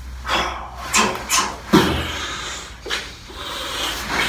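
Irregular rustling and knocking of a person moving about on a wooden floor, with clothing swishing: about five short noisy strokes, spread unevenly.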